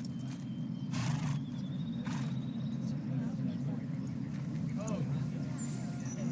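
Horses standing in a crowd: two short breathy blasts about one and two seconds in and a brief whinny-like call near the end, over a low steady crowd murmur.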